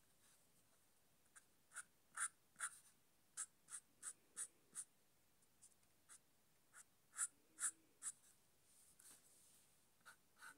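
Marker pen nib drawn across paper in a run of short back-and-forth colouring strokes, about two to three a second. They start about a second and a half in, with a brief pause midway.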